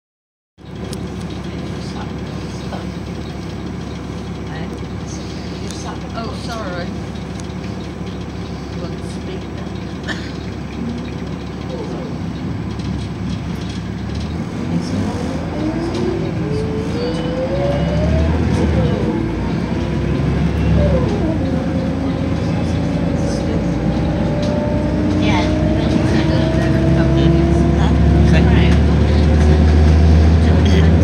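Volvo B7RLE single-deck bus heard from inside the passenger cabin while under way: its diesel engine and drivetrain run with a steady low rumble. About halfway through a whine rises in pitch as the bus gathers speed, and the running grows louder towards the end.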